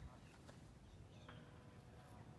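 Near silence: faint background noise.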